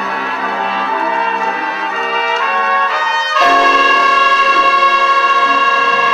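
Large pit orchestra playing a brass-led dance passage with a moving melody. About three and a half seconds in, the band lands on a loud held chord that carries through the rest of the passage.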